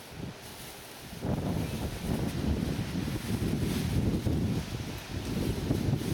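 Wind buffeting the microphone: uneven, gusting low noise that comes in strongly about a second in and keeps on, with some leaf rustle.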